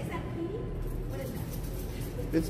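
Faint, indistinct voices in the background over a steady low rumble.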